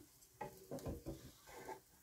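Wooden spatula scraping and tapping in a nonstick frying pan as egg is folded over the bread: a few soft, faint strokes.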